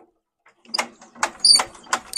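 A run of sharp metallic clicks and clinks, about half a dozen in a second and a half, from a hand tool working on a tractor engine's spark plugs as they are fitted back in. It starts about half a second in.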